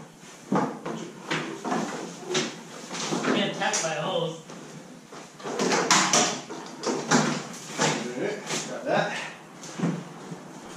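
Indistinct talking mixed with knocks and clatter from work up a ladder among the barn's roof trusses.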